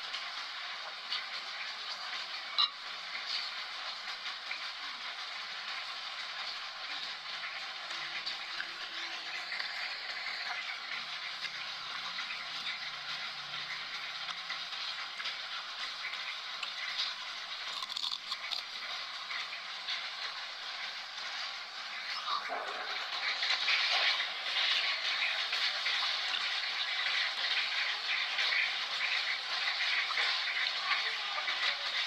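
Rain falling: a steady hiss that grows louder about two-thirds of the way through, with a single click about three seconds in.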